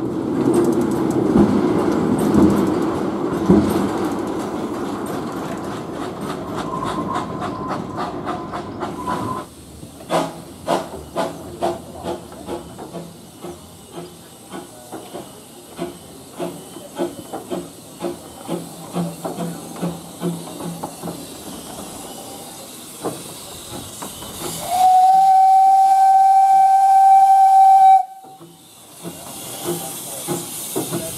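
Narrow-gauge industrial steam locomotives: loud steam hiss with quickening exhaust beats, then slow, regular chuffing. Near the end comes one steady steam-whistle blast about three seconds long, the loudest sound.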